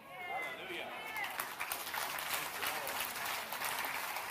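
A congregation applauding, the clapping taking over about a second in and carrying on evenly. A few faint voices respond at the start.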